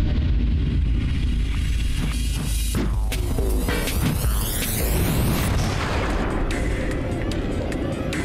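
Ride-film soundtrack: music with a heavy, booming low end, and a sweeping whoosh effect from about three seconds in.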